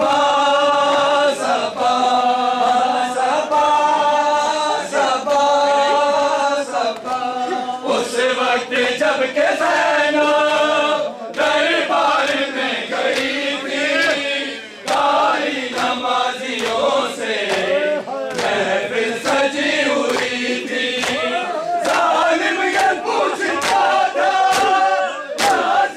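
A crowd of men chanting a Muharram noha in unison, holding long notes, over regular slaps of hands on bare chests (matam).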